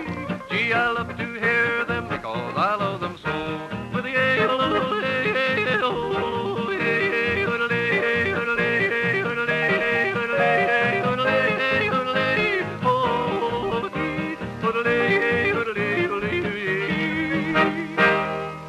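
A man yodeling an alpine-style yodel over acoustic guitar accompaniment, heard on an old radio transcription recording.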